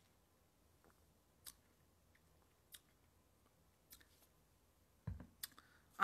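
Near silence with a few faint, short mouth clicks and smacks from sipping and tasting red wine, about one every second or so, and a soft low thump a little after five seconds in.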